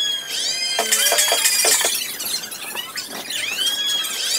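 Fast-forwarded audio: voices sped up into high, squeaky chipmunk-like chatter.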